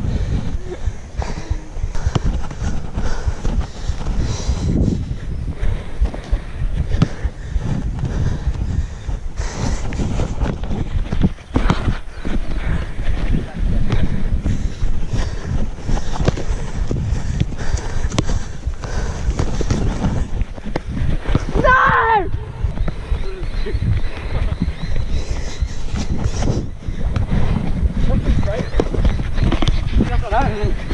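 Loud low rumble of wind and rubbing on a body-worn camera's microphone as a player runs and dribbles a football on grass, with many short knocks from footsteps and ball touches. A short shout comes about 22 seconds in.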